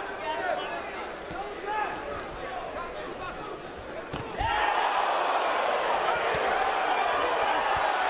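Boxing arena crowd: scattered voices and shouts, then a sharp thud a little past four seconds in, after which the crowd noise jumps to a loud, steady roar of cheering.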